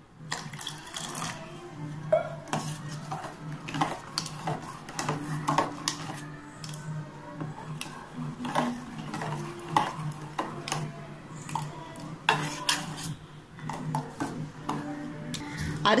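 Steel ladle stirring a thin batter in a stainless-steel pot: repeated clinks and scrapes of metal on metal, with a little sloshing of the liquid.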